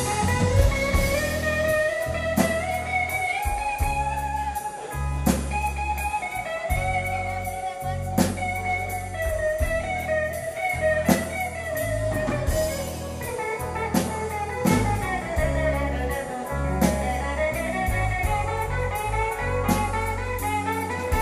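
Live band playing: electric guitars, bass guitar and drum kit, with a melodic line sliding up and down over a steady bass and drum groove.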